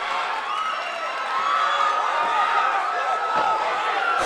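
Spectators at a cage-side MMA fight shouting and cheering, many voices overlapping at a steady level, reacting to a rear-naked choke attempt.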